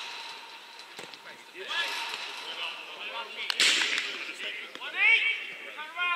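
Footballers shouting to each other across the pitch, the loudest call near the end, with a sharp thud of a kicked ball a little past halfway and a few lighter knocks.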